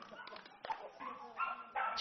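Kunming wolfdog puppies barking and yipping faintly, with a short pitched yelp near the end.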